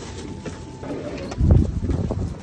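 Rustling and knocking handling noise from a hand-held phone being carried, with a loud low rumble about one and a half seconds in.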